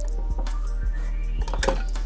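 Background music, with a few light metal clinks from an Allen key and locking pliers as the bolts of a headlight bracket are tightened.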